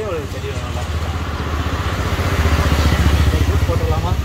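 A small engine running with a low, rapidly pulsing rumble that grows louder over the first few seconds and then holds.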